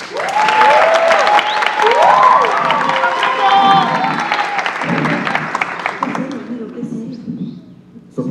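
Theatre audience applauding and cheering, with many high shouts rising and falling over the clapping; it dies down over the last two or three seconds.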